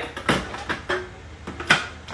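A Thermomix TM6's stainless steel mixing bowl being set back into its base and the lid fitted on: a few knocks and clunks, the loudest near the end.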